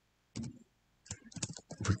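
Typing on a computer keyboard: a few separate keystrokes, one about half a second in and a quicker run of clicks in the second half.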